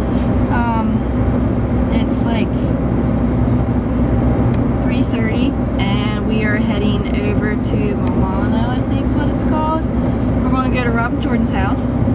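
Steady road and engine noise inside the cabin of a moving car, a constant low rumble, with a woman's voice talking over it at intervals.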